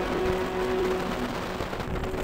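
Wind and road rumble from a gravity-powered soapbox car rolling fast downhill, heard on an onboard camera, under background music.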